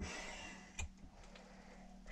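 Faint rustling handling noise that dies away within half a second, then a single light click a little under a second in and a couple of fainter ticks, in an otherwise quiet narrow tunnel.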